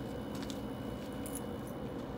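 A steady low hum, with a few faint metallic clicks and jingles from leash and collar hardware as a dog walks on a leash.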